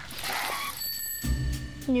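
A bicycle bell rung once about a second in, its bright ring fading, over background music.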